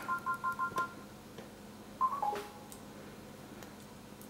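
Faint electronic tones from a Samsung smart fridge's touchscreen. A quick run of short two-note beeps plays in the first second, then a three-note falling chime plays about two seconds in as the display goes back to its home screen.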